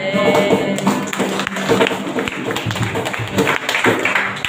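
Live worship-band music: acoustic guitars strummed under quick, irregular hand strokes on a cajón, with a singer's voice in the first second.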